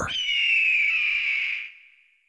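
A single long eagle-cry sound effect: a high, harsh scream that slides slowly down in pitch and fades out near the end.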